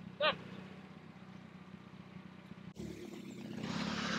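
A low, steady engine hum, with a brief vocal sound just after the start. About three seconds in it gives way to a hiss that rises toward the end.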